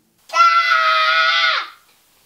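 A loud, shrill scream held steady for about a second and a half, dropping in pitch as it cuts off.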